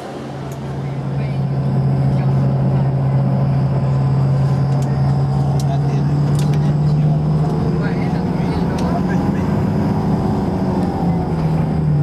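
Car engine and road noise heard from inside a moving car's cabin: a steady low hum that rises slightly in pitch about seven seconds in as the car picks up speed.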